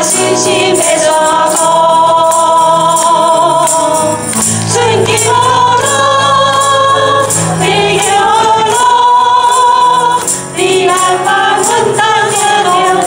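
Worship leaders and congregation singing a Taiwanese hymn with piano accompaniment and a steady jingling percussion beat.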